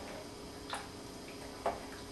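A spoon knocking twice against the pot, about a second apart, as meat is stirred into the tomato sauce.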